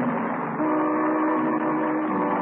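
Orchestral music bridge closing a radio comedy scene: a sustained chord that moves to a new held chord about half a second in.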